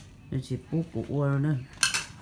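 A person's short vocal sounds followed by a drawn-out voiced sound, then a single sharp clink, like cutlery or a dish, just before the end.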